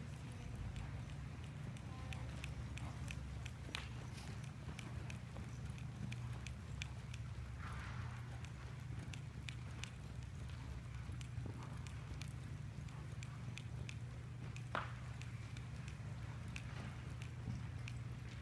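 Soft, irregular hoofbeats of an Arabian horse trotting on the dirt footing of an indoor arena, over a steady low hum.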